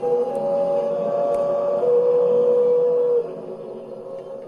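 Held electronic tones from an amplified sound installation: one steady tone steps down to a slightly lower pitch about two seconds in and cuts off suddenly a little after three seconds, over a low hum, with a couple of faint clicks.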